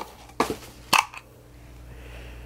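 Two short, sharp clicks about half a second apart as a small glass candle jar is handled and its lid taken off, over a faint room hum.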